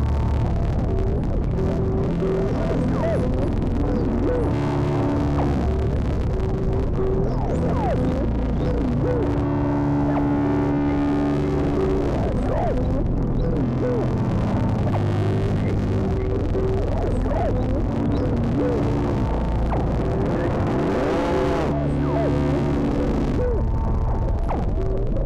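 Improvised ambient drone played on a Eurorack modular synthesizer: sustained low tones under short, repeated held notes, with wavering, gliding pitches drifting over them.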